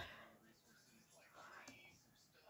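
Near silence, with faint whispering.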